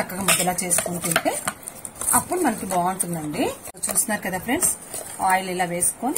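A hand squeezing and mixing a wet mixture in a steel bowl, with many small clicks and squelches, under a woman's voice.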